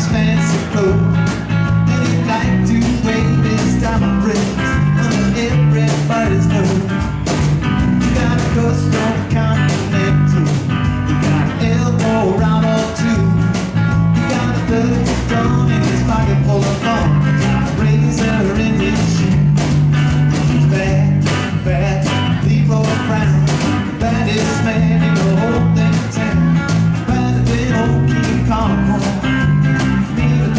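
Live band of drum kit, electric guitar, electric bass and acoustic guitar playing a mostly instrumental stretch of a rock-and-roll cover with a steady beat and a strong bass line.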